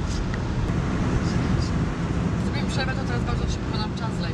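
Steady low rumble of tyre and engine noise inside a car cruising on a motorway.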